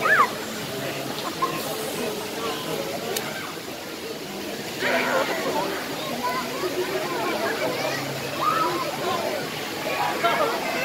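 Swimming pool water sloshing and lapping close by, under the untranscribed voices of people talking and calling out in the pool, louder about five seconds in and again near the end.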